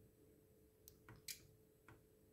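Near silence with four faint clicks from the Keithley 6517 electrometer as its current range is switched up, the loudest about two-thirds of the way through.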